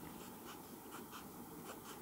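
Ballpoint pen drawing on paper: a few faint, short scratching strokes.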